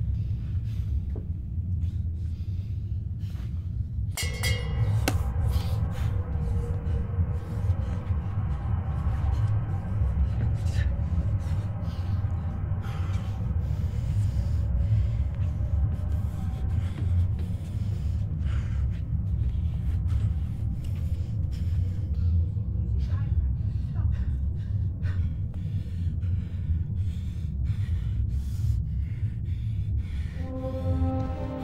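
Dramatic film-score music: a loud, low rumbling drone, joined about four seconds in by sustained, held higher tones.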